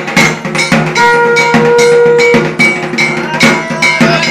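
Loud music of drums and metallic bell-like clangs beating in a quick rhythm, with a single held note from about a second in for a second and a half.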